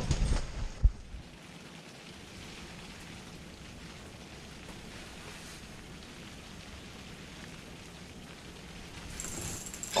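Rain falling steadily on the fabric roof of an insulated ice-fishing hut, after a couple of thumps in the first second. A high-pitched sound comes in near the end.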